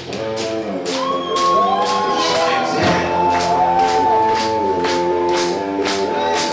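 Live rock band playing: drum kit keeping a beat of about two strikes a second under electric guitars, with singing over it and a long held note from about halfway through.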